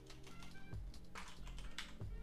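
Computer keyboard typing: a quick run of key clicks as a word is typed, over steady background music.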